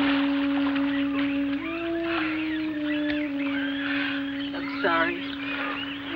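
Film soundtrack: a sustained low organ-like note that shifts to a new pitch every second or so, under chirping bird calls, with a short rapid trill just before the end.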